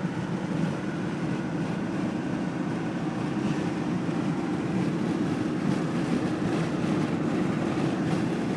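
Steady low vehicle rumble with no sharp events, even throughout.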